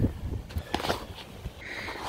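Light handling noises: a soft knock near the start and a few faint clicks and rustles, over a low steady rumble.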